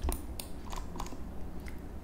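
A few scattered light clicks from a computer keyboard and mouse, over a low steady hum.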